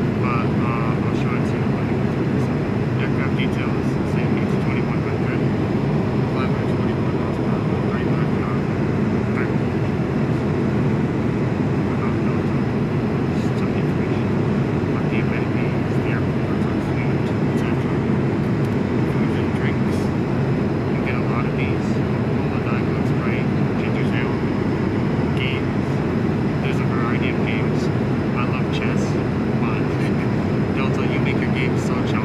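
Steady cabin noise of an Airbus A220-100 airliner in cruise, the rush of airflow and its two Pratt & Whitney PW1524G geared turbofans. Faint voices of other passengers come and go.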